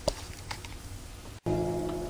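Faint room noise with two light clicks. Then, after a sudden break about one and a half seconds in, a steady hum with several even overtones.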